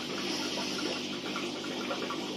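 Steady trickle and hiss of running water with a low hum underneath, as from aquarium pumps and filter return flow.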